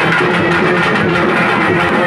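Urumi melam folk drum ensemble playing a steady, dense beat with sustained tones over it.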